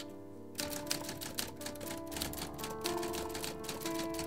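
Manual typewriter keys clacking in a quick, uneven run, starting about half a second in, over instrumental music with held notes.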